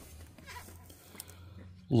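Quiet room tone with a faint steady low hum and a small click about a second in. A woman's voice starts just at the end.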